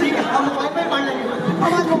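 Speech: actors' voices delivering stage dialogue.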